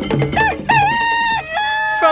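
A rooster crowing: one cock-a-doodle-doo in several held, pitched parts starting about half a second in, over a music track whose percussion beat fills the first moments.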